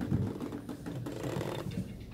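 Close handling noise on the recording phone: rustling with a rapid run of light clicks and taps.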